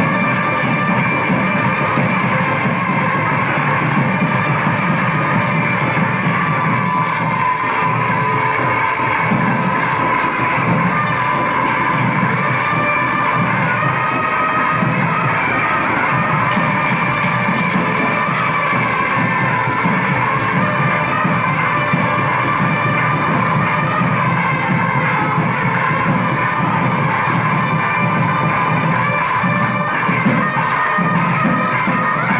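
Tamil temple music: a nadaswaram reed pipe playing on long held notes over steady thavil drumming.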